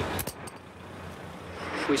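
A few short, sharp clinks a quarter to half a second in, then low steady background noise of a work space. A man starts speaking near the end.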